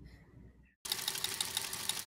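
Faint room tone, then about a second in a sudden burst of very fast, dense clattering begins and cuts off abruptly at the end.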